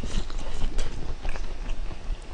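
A person chewing and biting braised pork knuckle close to the microphone, with irregular mouth smacks and clicks.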